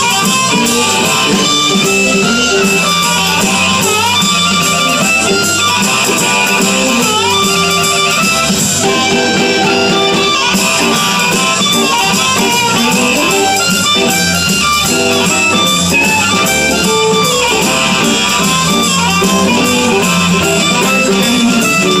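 Live blues band playing an instrumental passage: blues harp played into the vocal microphone over electric guitar, bass guitar and drum kit.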